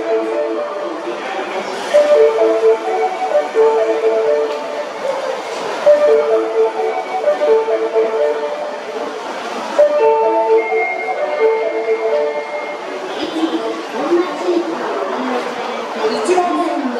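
A platform approach melody of repeated electronic chime notes plays over the station's public-address system. The rumble of the arriving train grows under it toward the end.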